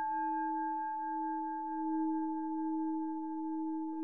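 A struck bell-like metal tone ringing on with several steady pitches at once, slowly swelling and fading in loudness, with a light second strike right at the end.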